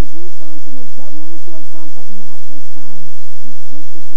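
Human voices whose pitch rises and falls continuously, with no clear words, over a steady hiss.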